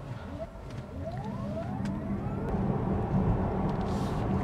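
A 2024 VinFast VF8 Plus, a dual-motor electric SUV, accelerating hard from a standstill at full throttle, heard from inside the cabin. A faint motor whine rises in pitch over the first couple of seconds while road and wind noise grows steadily louder.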